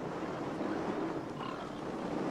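Faint animal grunting over quiet outdoor ambience from a film soundtrack.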